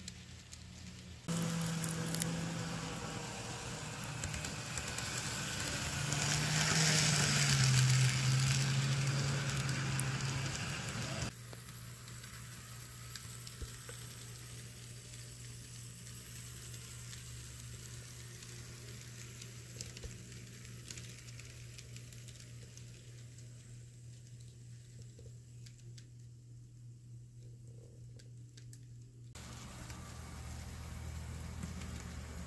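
A model freight train rolling along the layout track: a low steady motor hum under a light hissing clatter of wheels on rails. It is louder for the first ten seconds, with the hum sliding lower about seven seconds in, then drops to a quieter hum about eleven seconds in.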